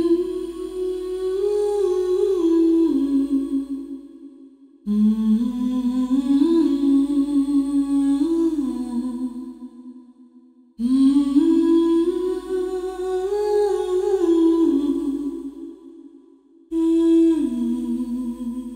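A voice humming a slow, wordless melody as soundtrack music: phrases begin about every six seconds, each scooping up at the start, then stepping down and fading away, over a deep sustained drone.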